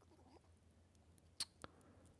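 Near silence, with two faint clicks a quarter of a second apart about a second and a half in.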